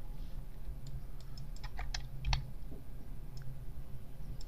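A quick run of light computer keyboard and mouse clicks, about eight in a second and a half, then one or two more, over a low steady hum.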